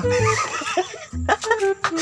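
A man laughing, in short pitched bursts that step down in pitch, over background music with a low beat.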